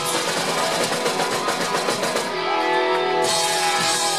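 Live rock band playing loud, with electric guitar and a drum kit through a bar PA. The fast cymbal and drum strokes stop for about a second past the midpoint, leaving sustained guitar notes, then the full band comes back in near the end.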